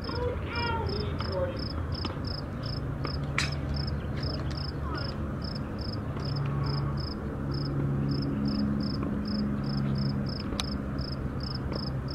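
An insect chirping steadily, a short high chirp about three times a second, over a low drone that swells for a few seconds in the middle. A couple of sharp clicks stand out.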